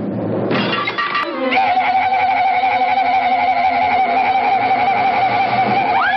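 Cartoon sound effects: a crash of breaking wooden boards in the first second or so, ending in a short falling glide, then a single orchestral note held with a slight waver for the rest.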